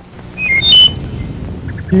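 A few short, high, bird-like chirps stepping between pitches about half a second in, then a few fainter high blips, over a low steady hiss from an old broadcast tape.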